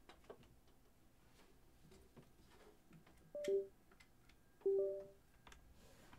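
Two short two-note Windows system chimes about a second and a half apart. The first falls and the second rises, the disconnect and connect sounds of a Novation USB device being plugged in. Faint clicks of handling come before them.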